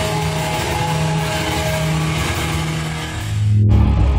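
Live hardcore punk band, loud and distorted: an electric guitar holds ringing, sustained notes for about three seconds. Then a low bass swell rises and the high end cuts off suddenly near the end, as the next part of the song starts.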